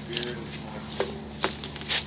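Faint voices over a steady low hum, with three short sharp clicks about a second apart in the second half.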